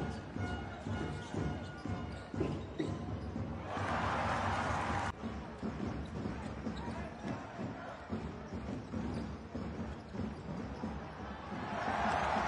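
Basketball game sound from the arena: a ball being dribbled on a hardwood court over crowd noise. A loud burst of crowd cheering comes about four seconds in and cuts off suddenly.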